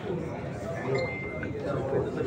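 Murmur of spectators' voices in a pool hall. About a second in there is a single light clink that rings for about half a second.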